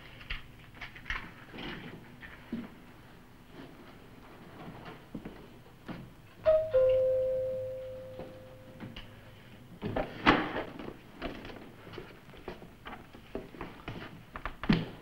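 A two-note door chime rings about six seconds in, a higher note then a lower one that rings on and slowly fades. About four seconds later comes a loud sharp clatter, among scattered small knocks and rustles.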